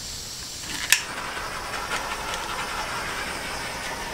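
Handheld heat tool switched on with a click about a second in, then running with a steady hiss as it heats wet acrylic paint to bring up cells.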